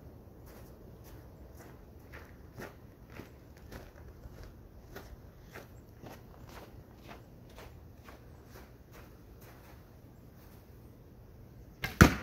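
Faint footsteps crunching in snow, about two a second. Near the end a sudden loud crack as an arrow is shot from a bow.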